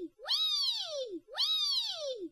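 Cat meows, the same call played twice. Each meow rises quickly and then slides down in pitch over about a second.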